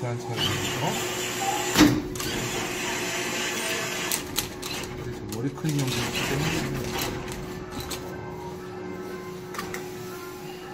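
Claw machine's crane motor whirring as the claw travels and lowers onto the plush pile, with a sharp click about two seconds in and a few lighter clicks later, over a steady hum and indistinct voices.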